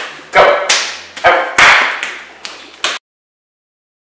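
A run of about six loud, short vocal calls, each starting sharply and dying away, ending abruptly about three seconds in, after which there is silence.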